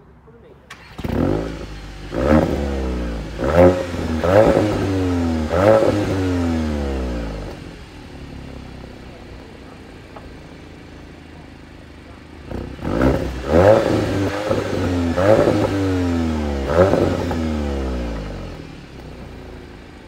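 Audi TT 45 TFSI's twin exhausts as its turbocharged 2.0-litre four-cylinder petrol engine is revved: about five quick revs rising and falling, then a quieter idle, then a second run of about four revs. The two runs show the exhaust note in comfort mode and then in dynamic mode.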